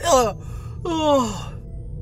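A voice making two short falling vocal sounds, the second a drawn-out sigh that sinks in pitch and trails off, over a low steady hum.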